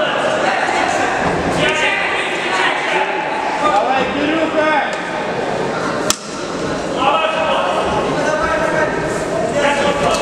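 Voices calling out over one another in a large, echoing hall during a cage fight, with one sharp smack about six seconds in.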